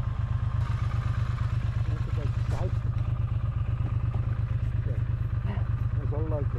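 Triumph Speed Twin 900's parallel-twin engine idling steadily with the motorcycle at a standstill.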